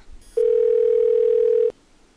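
Telephone ringback tone on an outgoing call: one steady ring tone, about a second and a half long, that cuts off sharply.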